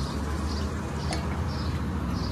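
Outdoor street ambience: a steady low rumble, with a short high sound repeating about twice a second and a single sharp click a little past halfway.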